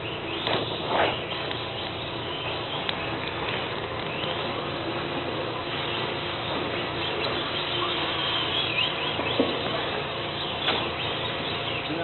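Radio-controlled drift cars running on a carpet track: high motor whines rising and falling over a steady hum, with a few brief sharp knocks.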